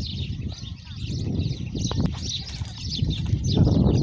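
Many small birds chirping and twittering continuously over a steady low rumble that swells near the end, with two sharp clicks about two seconds in.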